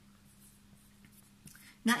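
Whiteboard marker drawing faintly on a small whiteboard, then a woman's voice starts near the end.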